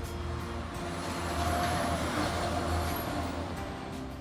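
A road vehicle passing on the street: a rush of traffic noise that builds, peaks mid-way and fades, with a faint high whine over it.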